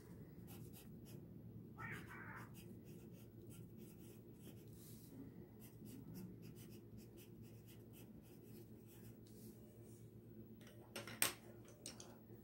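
Colored pencil writing on paper over a clipboard: faint, quick scratching strokes as words are written. A sharper click near the end.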